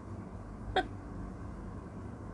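A single short, sharp vocal sound, about three quarters of a second in, over steady low background noise.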